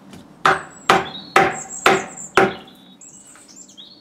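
Mallet knocking wood offcuts tight into the recess of a log carving bench as wedges, five sharp wood knocks about two a second, locking a bowl blank in place. Birds chirp faintly in the background.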